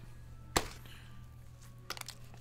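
A sharp click about half a second in and a second, fainter click near the end, over a low steady hum.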